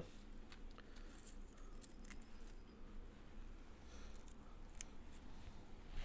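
Faint, scattered crisp snips and light taps of a kitchen knife cutting through parsley stems on a wooden cutting board.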